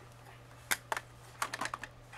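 A quick run of sharp clicks and taps, about six in a second, starting just under a second in. It is the sound of small plastic makeup items being handled and set down.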